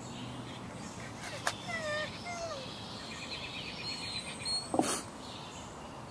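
Outdoor ambience with birds chirping in the background. About two seconds in come a few short high calls that bend in pitch, and just before the end a single sharp, louder sound.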